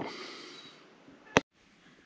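Faint room noise fading away, then a single sharp click about one and a half seconds in, followed by dead silence at an edit cut.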